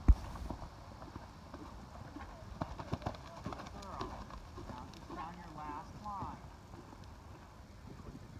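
A horse cantering on a sand arena, with a heavy thud right at the start as it lands from a jump, then scattered hoofbeats.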